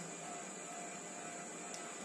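Faint, steady background hiss with a faint steady hum: room tone in a pause between speech.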